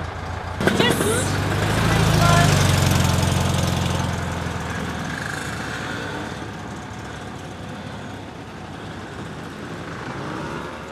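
A car engine running close by, swelling to its loudest about two to three seconds in and then fading into steady outdoor background noise, after a short knock near the start.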